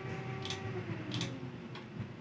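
Three quiet computer mouse clicks about half a second to a second apart, over a faint steady hum.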